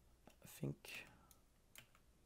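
Faint, scattered clicks of a computer keyboard: a few separate keystrokes.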